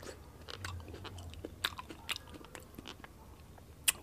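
A person biting into and chewing a small, round yellow tomato: faint, scattered clicks of chewing.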